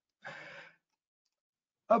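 A man's short, soft breathy exhale, like a sigh, lasting about half a second, then quiet; a spoken word starts right at the end.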